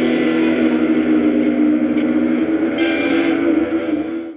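Rock band playing live: a held electric guitar chord rings on, with two cymbal crashes, about two seconds in and again near three seconds, like a song's final chord being drawn out.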